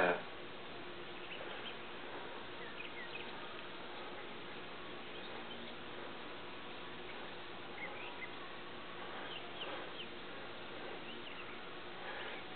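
Quiet outdoor background noise with a few faint, short high chirps scattered through it.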